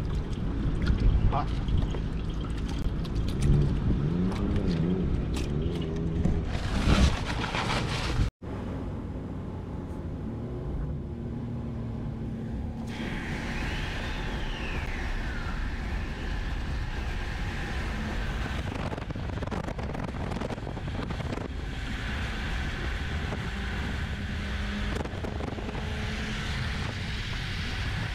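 A man's voice and hands washing at a portable hand-wash basin, then a sudden cut to steady road and engine noise inside a pickup truck's cab at highway speed.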